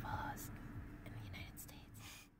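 Faint whispered voice, a few brief hissy breaths and syllables over a low steady rumble.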